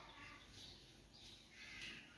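Near silence: quiet room tone, with a faint bird call near the end.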